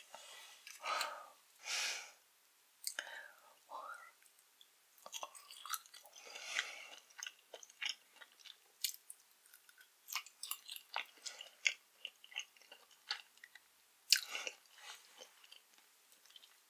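Close-miked mouth sounds of chewing a soft layered watermelon jelly slice coated in sour gel: irregular wet smacks and sharp little clicks, with a few fuller, longer sounds in the first two seconds.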